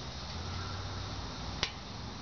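A single sharp click about a second and a half in, over a steady low hum.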